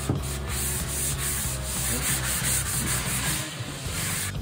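Drywall plaster being sanded by hand with a sanding block: a scratchy hiss in quick, repeated back-and-forth strokes, about three a second, as the wall is smoothed.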